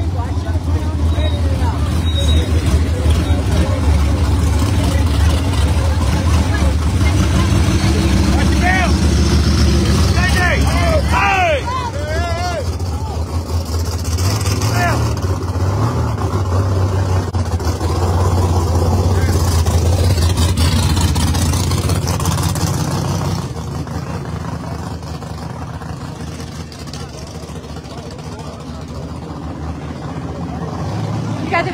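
Loud, steady low rumble of race-car engines running nearby, with people talking and calling out over it; the rumble drops quieter about three-quarters of the way through.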